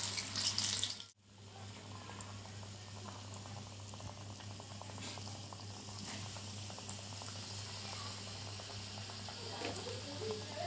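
Battered chicken popcorn pieces deep-frying in hot oil in an iron kadai, a steady bubbling sizzle. The sound cuts out briefly about a second in, then carries on evenly over a low steady hum.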